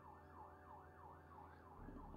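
A faint siren sounding in a fast rising-and-falling yelp, about three cycles a second, which cuts off near the end.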